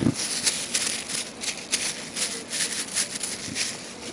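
Thin clear plastic film crinkling as it is handled in the hand, an irregular run of quick crackles.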